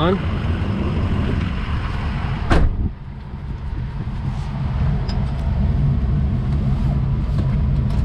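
The Ford F-350's 6.0 L turbo-diesel V8 idles steadily, heard from inside the cab as a low rumble. A single sharp knock comes about two and a half seconds in.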